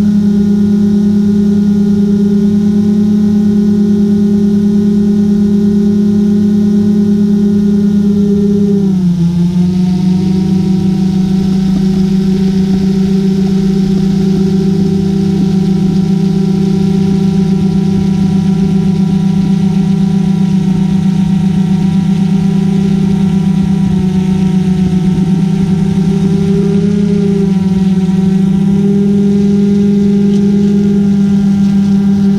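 Multirotor drone's motors and propellers humming steadily, heard from the camera mounted on the drone. The hum drops in pitch about nine seconds in and rises back near the end as the motor speed changes.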